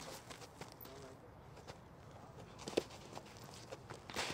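Catcher's cleats scuffing and shuffling on the infield dirt, with one sharp knock of the baseball striking the catcher's mitt or gear about three quarters of the way through.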